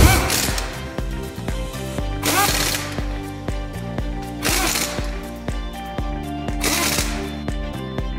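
Pneumatic impact wrench with a 17 mm socket hammering on a car's wheel bolts in four short rattling bursts about two seconds apart, tightening the bolts as the wheel goes back on. Background music with a steady beat plays underneath.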